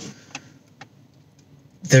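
Quiet room tone inside a car between sentences, with a couple of faint short clicks, then a man's voice resumes near the end.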